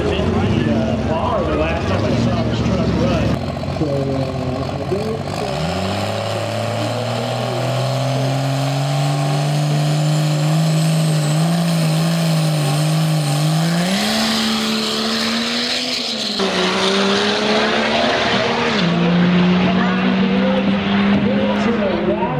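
Diesel drag truck, a modified Dodge Ram pickup, running at the starting line and then making a full-throttle quarter-mile pass, the engine note rising in pitch. The record run covers 9.74 s at 142 mph.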